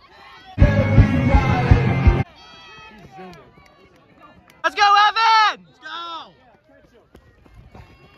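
A loud burst of music with a heavy beat lasting about a second and a half, then, around five seconds in, a couple of high shouted cheers urging on a relay runner.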